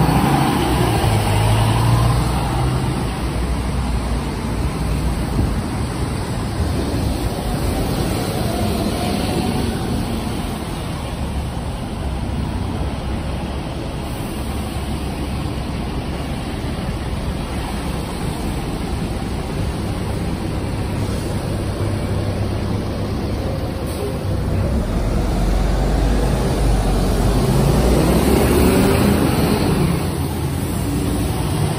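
City street traffic: buses and cars passing, with a steady road hum. A bus engine's low rumble swells near the start and again near the end.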